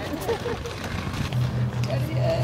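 Faint talking from people walking, joined about a second and a half in by a low hum that pulses about five times a second.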